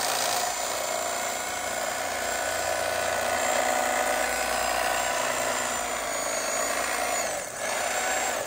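An old electric carving knife running, its serrated blades sawing back and forth through foam. The motor buzz holds steady, dips briefly near the end and then carries on.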